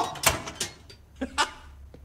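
Two compartment doors of an automated weapon-dispensing machine clicking and sliding open: several short clicks and knocks, the clearest two close together a little past the middle.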